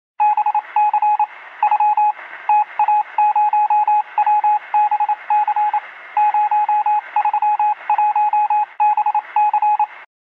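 Morse code: a single steady tone keyed on and off in short and long elements, over a band-limited hiss like radio receiver audio.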